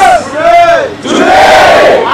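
A large crowd shouting together in unison: two loud calls, each rising and then falling in pitch and lasting just under a second.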